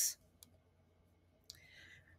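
A pause between spoken sentences: the tail of a word, a faint mouth click, near silence, then a sharper mouth click and a soft intake of breath just before speech resumes.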